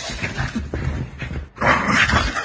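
A dog vocalising with short, irregular noises, briefly dropping off and then coming back louder near the end.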